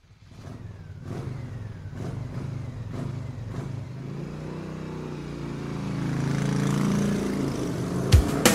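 A motor vehicle engine running and revving as a sound-effect intro to a song, its pitch rising and growing steadily louder over several seconds.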